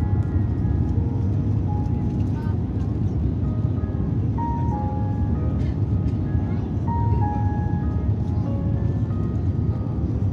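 Steady low rumble of a jetliner's engines and airflow heard inside the cabin in cruise, with a simple melody of short, plain notes playing over it.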